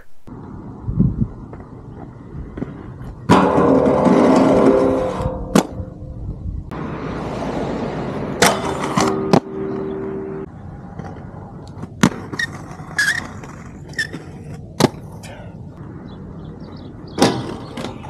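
Aggressive inline skates rolling on hard ground, with loud scraping grinds (a long one about three seconds in, another around eight seconds) and several sharp clacks of landings and impacts.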